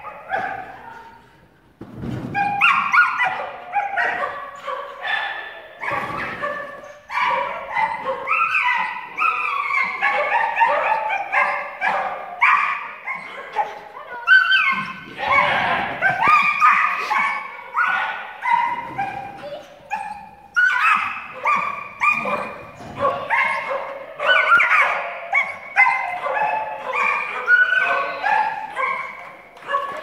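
Dog barking and yipping almost without a break in quick, high calls, after a brief lull near the start: excited barking from a dog running an agility course.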